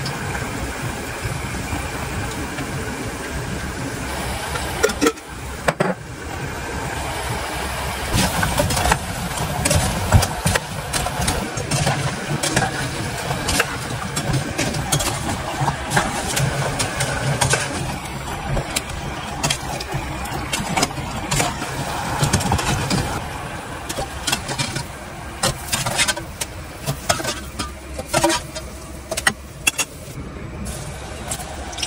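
Pastries frying in hot oil in a metal pot: a steady sizzle with a low hum under it, and frequent sharp clinks and scrapes of a metal slotted spoon against the pot.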